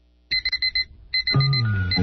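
Rapid high electronic beeping like an alarm clock, in two short bursts, then music with a deep bass line comes in about one and a half seconds in.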